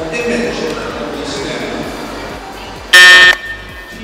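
A quiz buzzer sounds once about three seconds in, a short loud electronic buzz lasting about a third of a second: a team buzzing in to answer. Background music plays underneath.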